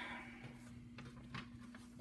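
Quiet room with a steady low hum and a few faint ticks from trading cards being handled in gloved hands.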